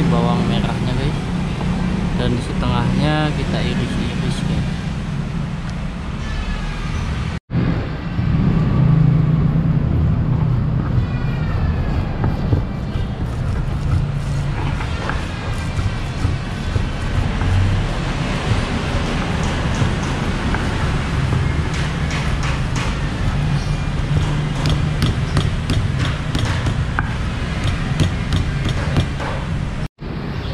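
Stone pestle grinding and knocking against a stone mortar as shallots and spice paste are crushed, with short knocking strokes that come thickest in the second half, over steady background voices and a low rumble.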